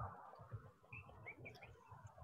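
Near silence with room tone, broken about a second in by a few faint, short chirps like a small bird in the background.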